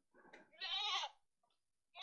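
A woman's brief, wavering giggle, about half a second long, a little after the start.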